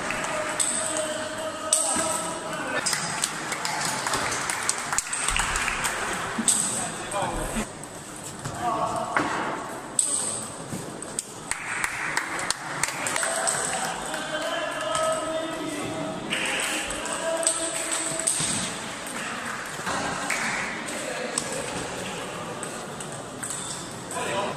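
Table tennis ball being hit back and forth in rallies, sharp ticks off the bats and the table coming in quick runs, ringing in a large hall.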